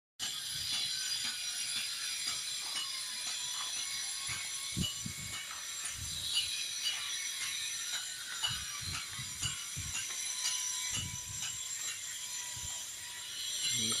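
Steady high-pitched insect chirring with a regular ticking pulse, from the surrounding tropical vegetation, and scattered low thumps of footsteps on the brick path.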